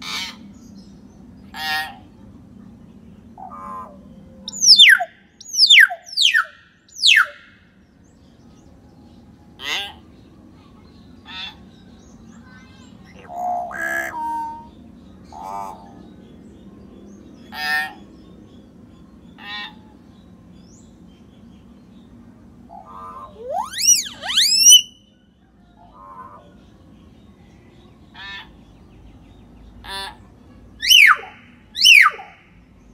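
Common hill myna calling: short harsh calls and clicks every couple of seconds. Three loud, sharply falling whistles come about five to seven seconds in, and a quick run of rising whistles comes later on.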